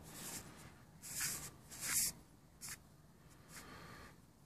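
A few brief, soft scratchy rubbing sounds of a hand handling the cast aluminium shoulder joint and lock pin close to the microphone.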